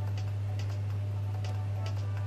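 A steady low electrical hum, with the faint ticking percussion of a backing track over it.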